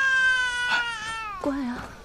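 A feverish young child crying: one long, high wail that sags in pitch about a second in and breaks off into a lower whimper about one and a half seconds in.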